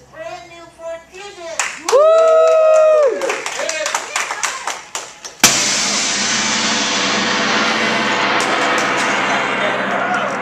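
A large hanging brass gong struck once with a mallet about five seconds in, then ringing on in a loud, long shimmering wash. Before the strike there is talk and a loud drawn-out shout.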